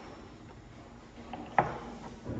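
Lab glassware handled on a bench: a few light clicks, then one sharp knock about one and a half seconds in as the glass dropper bottle is handled.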